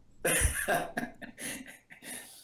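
A person coughing: one sharp cough about a quarter second in, followed by several weaker short coughs.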